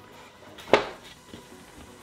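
A single sharp knock about three quarters of a second in, from a wooden drawer box being handled and bumped on the floor, with quiet handling noise around it.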